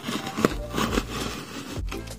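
Craft knife blade slicing through clear plastic packing tape along the seam of a cardboard box: an uneven scratching with a sharp click about half a second in.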